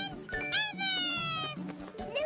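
High-pitched cartoon bird chirps over background music, with a long falling squeal in the middle.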